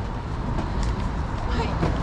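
Busy city street ambience: a steady low rumble of traffic with indistinct chatter of passers-by.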